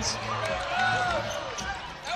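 Basketball being dribbled on a hardwood court under the general noise of an indoor arena, with faint voices and squeaks in the background.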